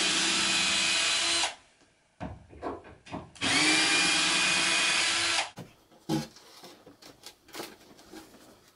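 Cordless drill-driver running in two bursts of about two seconds each, backing screws out of the top of a wardrobe that is being dismantled, its motor whine rising briefly as each burst starts. A few light knocks follow near the end.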